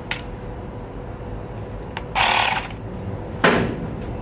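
Handling noises from a handheld Xiaomi electric air pump being turned over in the hand: a click at the start, a short rustling scrape about two seconds in, and a sharp knock near the end, over a steady low hum.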